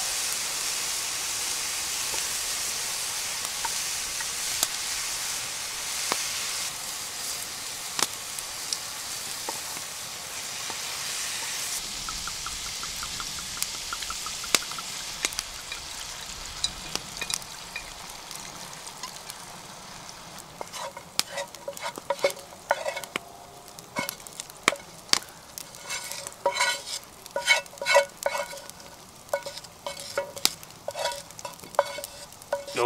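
Diced bacon sizzling in a frying pan over a campfire, the hiss starting suddenly and dying down slowly over the first twenty seconds. In the last ten seconds a wooden spatula scrapes and knocks repeatedly against the pan.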